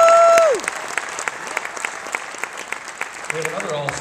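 Audience applauding, with a loud, held "woo" cheer at the start that falls away after about half a second.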